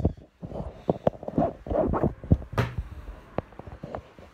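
Rustling and knocking of clothing and a hand-held phone being jostled while a card is dug out of a pocket: an irregular string of short clicks and scuffs.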